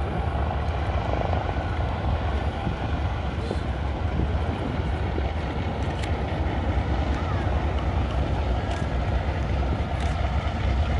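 Lockheed L-1049 Super Constellation's four Wright R-3350 radial piston engines running at taxi power as the airliner taxis, heard from a distance as a steady low drone.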